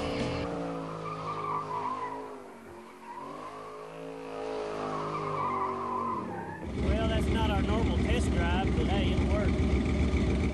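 Shelby GT350SR's 350-horsepower V8 revving up and down while its rear tyres squeal through a smoky burnout slide. About two-thirds of the way in the engine turns louder and rougher.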